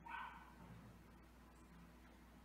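Near silence, with one brief, faint, high-pitched animal call right at the start.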